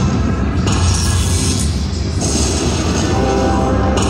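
Zeus Unleashed slot machine playing its free-games music and spin sound effects over a heavy, steady bass, with the layers of the music changing as the reels spin.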